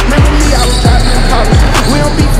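Hip hop beat between rap lines: deep bass kicks that drop in pitch, hitting about every half to three-quarters of a second over a dense backing track.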